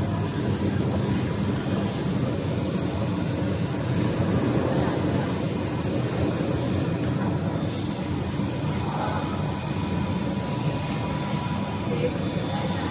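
Tape-converting machinery in a stationery tape factory running with a steady low mechanical hum.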